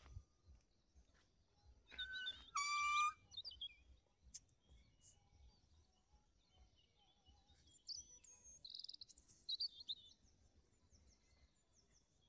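Birds calling. The loudest is a short, strongly pitched call about two to three seconds in, and a burst of quick, high chirps comes about eight to ten seconds in, over a faint outdoor background.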